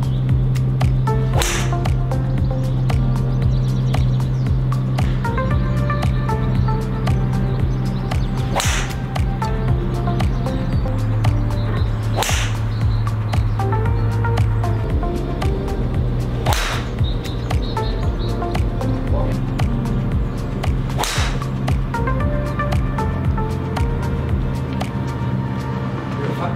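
Golf club heads striking golf balls in five sharp cracks, several seconds apart, over background music with a steady bass line.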